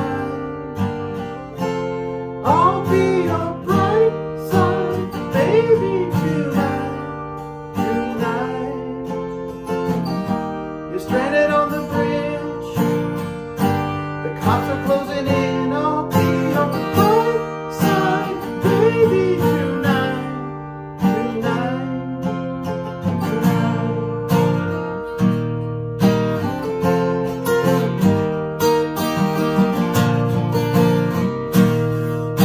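Acoustic guitar strummed and picked in a steady rhythm, with a man singing over it at times.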